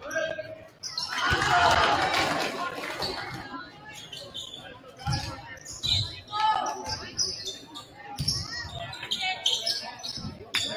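A basketball dribbled on a hardwood gym floor: a run of low bounces from about halfway through, with short high sneaker squeaks and players' and coaches' shouts echoing in the gym. A burst of shouting and cheering comes about a second in.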